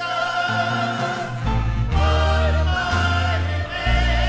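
A worship song sung live: a lead singer holds long notes with vibrato over a choir and instrumental backing. The deep bass notes shift to a new note every second or so.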